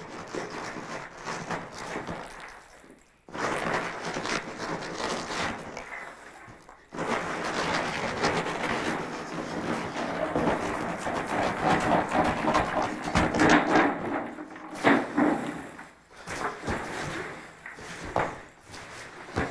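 Hundreds of small cheese balls pouring out of a large jar and pattering onto a wooden tabletop in a dense rattling stream, in two long spells. A few heavy thumps on the table follow about three seconds before the end.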